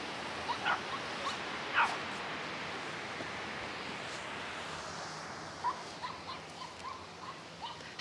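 Steady, faint outdoor hiss of distant surf and wind, with a few faint, short calls from far off.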